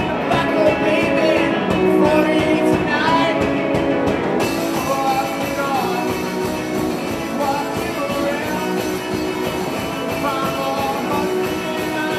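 A live rock band playing loud: distorted guitar and a drum kit, with a sung vocal over the top in the first few seconds.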